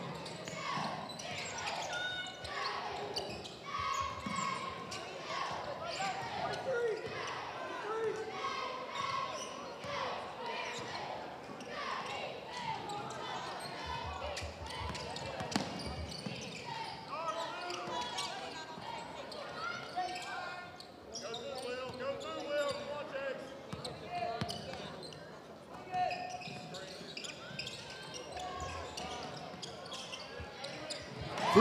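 Basketball game ambience in a gymnasium: a steady mix of crowd voices and shouts from players and the bench, with a basketball bouncing on the hardwood floor now and then.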